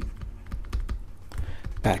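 Irregular light clicks and taps of a stylus writing on a pen tablet, over a low steady hum. A voice starts near the end.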